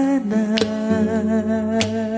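A man's voice humming one long held note with vibrato over sustained instrumental backing, with two sharp clicks or strums about half a second and almost two seconds in.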